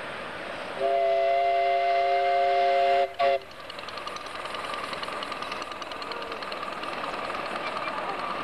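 Miniature live-steam locomotive sounding its steam whistle: one long blast of about two seconds with several notes sounding together as a chord, then a short toot. The locomotive then pulls away, its exhaust beating in quick, regular chuffs over a hiss of steam.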